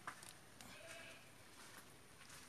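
Near silence, with a faint click at the start and a brief, faint, steady-pitched call a little over half a second in.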